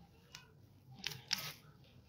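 Faint handling noise on a phone: a single short click about a third of a second in, then a few clicks and rustles around a second in.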